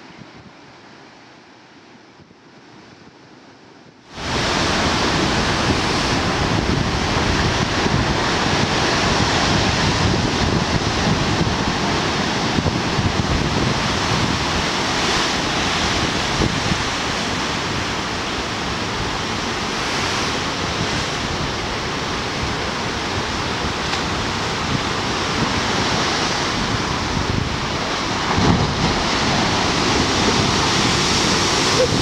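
Heavy storm waves breaking against a harbour breakwater: a loud, continuous rush of surf and spray, with wind buffeting the microphone. For the first four seconds it is quieter surf washing over a rocky shore, before the sound jumps abruptly to the loud harbour surf.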